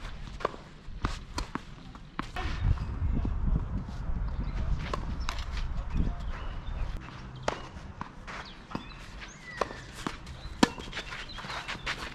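Tennis rally on a clay court: sharp pops of racket strings striking the ball and the ball bouncing, spread irregularly through the rally, the loudest near the end. Between them come the scuffing footsteps of a player running and sliding on the clay.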